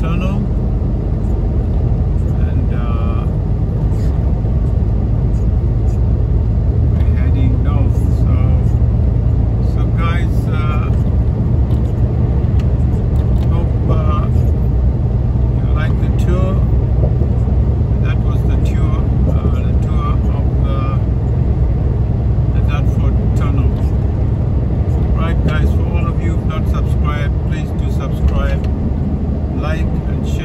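Steady low engine and road rumble inside a moving vehicle's cab, heard while driving on a motorway. A voice talks on and off over it.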